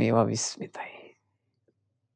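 A man's voice speaking a brief phrase in the first second, then silence.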